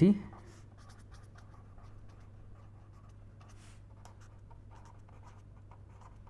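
Pen writing on paper: faint, irregular scratching strokes as a phrase is written out by hand.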